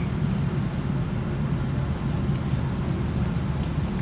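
Steady low background rumble with no clear rhythm or pitch.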